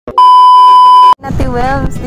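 A TV colour-bars test-tone beep used as a sound effect: one loud, steady, high beep lasting about a second, cut off abruptly.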